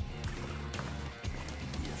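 Background music with sustained low bass notes.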